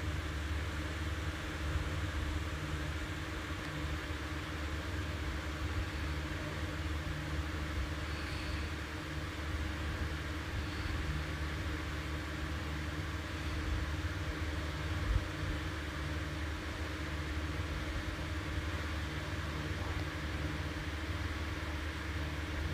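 A motor running steadily, a constant low hum with a fixed tone above it and no change in speed.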